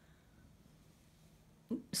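Near silence: quiet room tone, broken near the end by a short vocal sound and the first word of a woman's speech.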